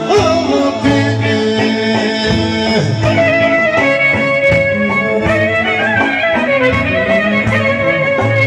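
Greek folk dance music with fiddle and plucked strings, playing steadily for the line dancers.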